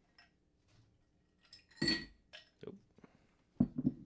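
Ice cubes clinking into a drinking glass: one loud ringing clink about halfway through, with a few lighter clicks around it.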